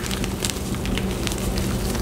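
Gloved hands crushing and kneading crumbled gym chalk, plain white mixed with turquoise-dyed chalk: a steady crackling crunch of chalk breaking down into powder, with many small sharp crunches scattered through it.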